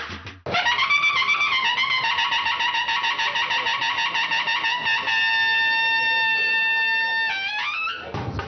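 A brass fanfare on a trumpet-like horn: a quick, wavering run of repeated notes, then one long held high note that slides upward near the end. It opens after a brief break in the sound.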